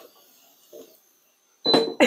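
A Proscenic T22 air fryer's basket drawer is slid out, giving a faint scrape and a light sizzle from the hot fries. A woman's short laugh begins near the end.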